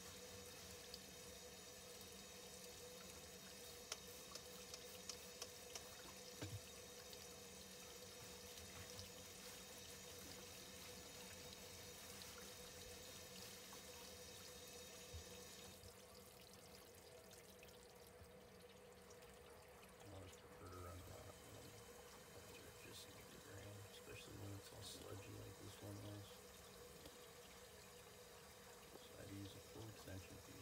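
Near silence: faint room tone with a steady low hum and a few faint clicks.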